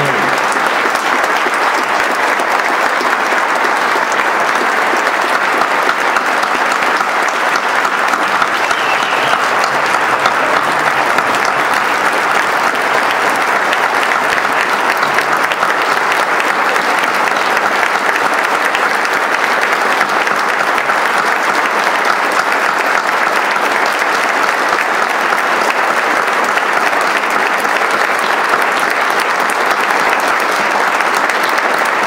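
Large audience applauding, a dense and steady clapping that does not let up.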